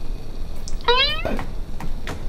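A single short, high-pitched vocal call rising in pitch, about a second in, followed by a few faint clicks.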